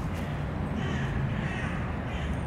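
Carrion crow calling twice, two short caws, over a steady low rumble.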